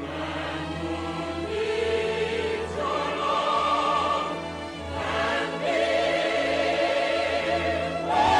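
Live musical-theatre music: a choir singing long held notes with vibrato over a sustained orchestral bed, easing briefly about five seconds in before swelling again.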